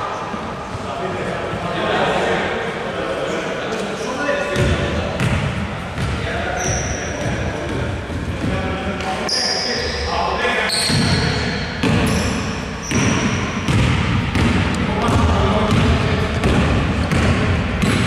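Ball bouncing on a hardwood basketball court with short sneaker squeaks and players' voices, echoing in a large gym.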